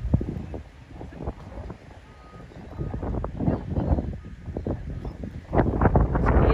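Wind buffeting the microphone in irregular gusts, a low rumble that swells and drops, strongest near the end.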